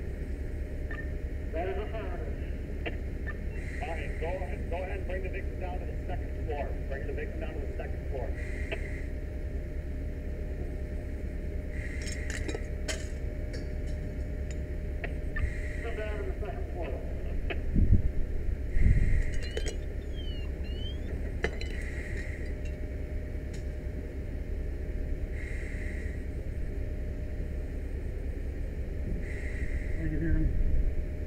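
Window glass of a burning room breaking and clinking, with sharp cracks about twelve seconds in, over a steady low rumble. A short high chirp repeats about every two seconds, and two louder low thuds come a little past the middle.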